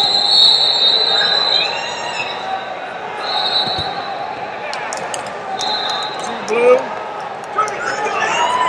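Crowded wrestling tournament hall with echoing shouts from coaches and spectators, and three steady high whistle blasts: a long one at the start, then shorter ones in the middle and about three quarters in.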